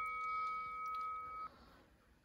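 A bell chime sound effect ringing out in a few steady tones, fading, then cut off abruptly about one and a half seconds in.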